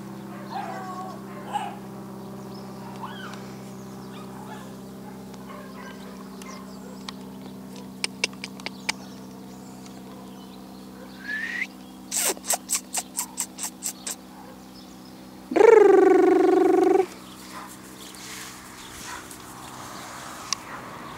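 A loud, drawn-out animal call lasting about a second and a half, two-thirds of the way through, preceded by a quick run of about eight sharp chirps, over a steady low hum.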